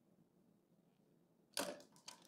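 Near silence, then about one and a half seconds in a short, sharp plastic click from Lego bricks being handled on the model train engine.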